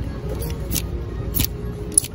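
Background music with a few sharp clicks of plastic clothes hangers being pushed along a clothing rack, the loudest right at the end.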